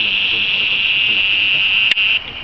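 Fujifilm digital camera's zoom lens motor whining steadily at a high pitch while zooming in, with a small click near the end.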